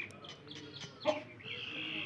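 Birds calling: a few short high chirps, then a longer drawn-out high call near the end.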